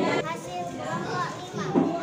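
Children's voices talking, the words indistinct.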